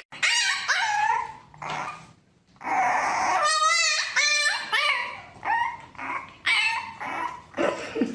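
French bulldog puppy yelping and howling in a string of high calls. The longest call, about three seconds in, ends in a quavering warble.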